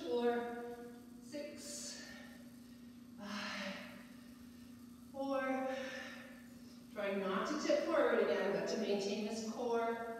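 A woman's voice in short phrases, with breathy gaps between them, over a steady low hum.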